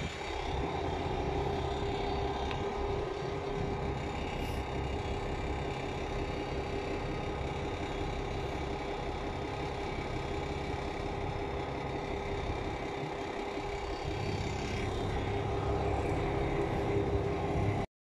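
Fishing boat's engine running steadily at low speed while manoeuvring in harbour, a constant hum with a low rumble beneath it; it cuts off abruptly near the end.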